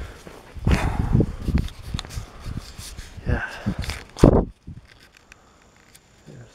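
Footsteps and handling noise from someone moving with a handheld camera, in a few short bursts with the loudest about four seconds in, then quiet.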